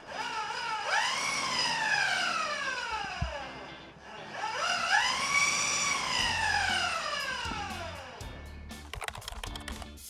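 Car alternator converted into a brushless motor spinning the bicycle's wheel: a whine rises quickly, then falls slowly as it winds down, twice in a row. Background music plays underneath.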